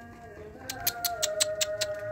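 A homing pigeon's wings clapping in a quick run of about seven sharp flaps, some six a second, as it comes in, over a long, drawn-out, slightly falling cry.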